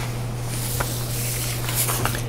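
Meeting-room tone: a steady low electrical hum under an even hiss, with a couple of faint soft clicks or paper rustles.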